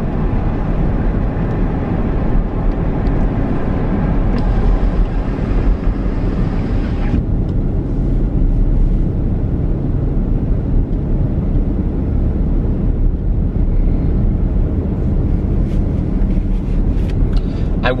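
Steady road and tyre rumble with engine hum inside a moving car's cabin. The higher hiss drops away about seven seconds in.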